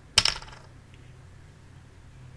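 A plastic water bottle being handled: a sharp clack a moment in, followed by a brief rattling clatter that fades within about half a second.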